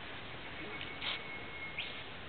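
A bird calling in rainforest: a thin, steady high whistle held for about a second that ends in a sharp upward-sweeping note, with two short sharp calls just before it, over steady forest background hiss.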